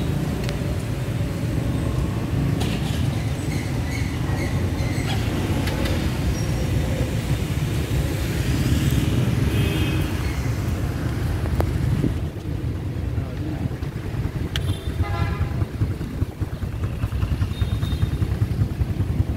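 Steady low rumble of road traffic outdoors, with short higher-pitched toots of vehicle horns about halfway through and again later on.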